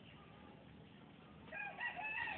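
Quiet room tone, then about one and a half seconds in a louder, high-pitched animal call in several short rising-and-falling notes.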